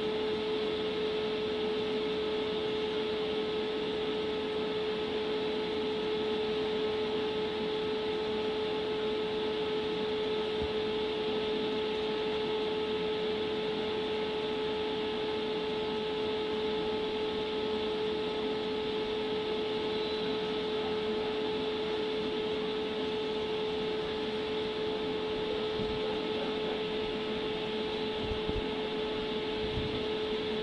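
A steady machine hum with a high, even whine running through it, unchanging in pitch and level.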